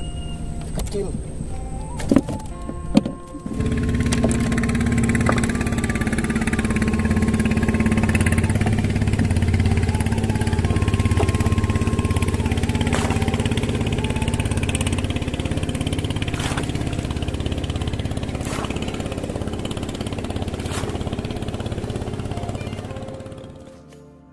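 Small boat engine starting up about three seconds in and running steadily at an even pitch, then fading out near the end.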